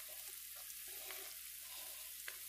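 Faint, steady sizzle of dirty rice with sausage in a nonstick skillet on the stove.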